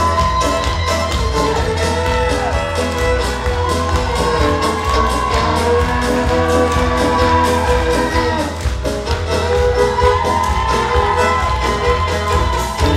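A live fiddle band plays a lively tune over a steady bass beat, with the audience clapping along in time and an occasional cheer.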